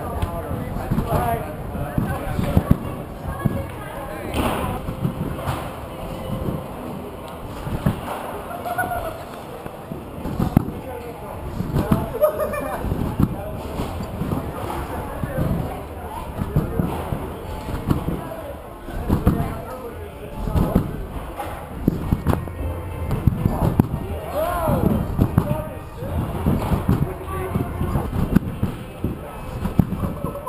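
Trampoline beds thudding again and again as jumpers bounce on them, under a steady background of voices.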